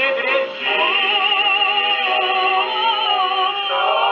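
Male vocal quartet singing in close harmony from a 1930 78 rpm record played on a portable acoustic gramophone: a long held chord with vibrato, moving to a new chord near the end. The sound is thin and narrow, with no top end, as old shellac played through a gramophone's soundbox sounds.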